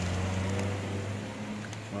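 A vehicle engine running at a steady idle, a low even hum.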